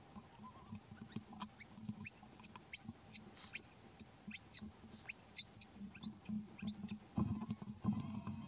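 A quick series of short, high, arching chirps, several a second, from about two seconds in until past six seconds, over soft rustling and ticking in the grass.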